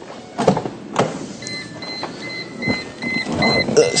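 Mercedes-Benz W203 C-Class lights-on warning chime: a high tone beeping over and over, starting about a second and a half in, the car's signal that the headlights have been left on with the driver's door open. A few knocks come just before it.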